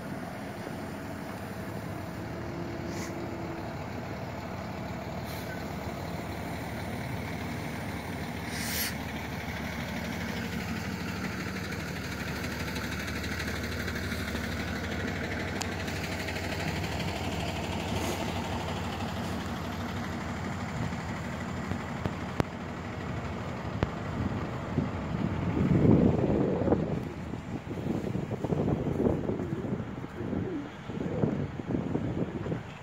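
Road traffic and heavy-vehicle engines running steadily, with a brief hiss about a third of the way in. Louder, uneven rumbling bursts near the end.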